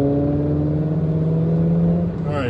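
A car engine accelerating: a steady drone that rises slowly in pitch, heard from inside a car's cabin.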